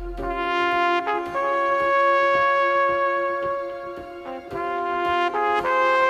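Trumpet playing a slow melody of long held notes, one of them held for about three seconds, with a couple of quick note changes near the end. Under it runs a steady backing track with a soft, regular beat.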